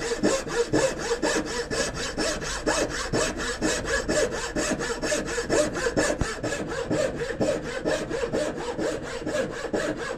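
A wooden-framed turning saw cutting a curve in a board by hand. It takes steady, even, long strokes, and the blade rasps through the wood without a break.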